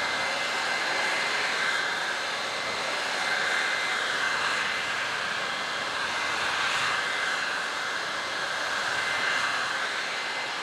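Corded Toro electric leaf blower with a 12-amp motor running steadily, blowing water off a car's trunk. A steady high whine sits over the rush of air, which swells and eases a little as the nozzle is swept across the panel.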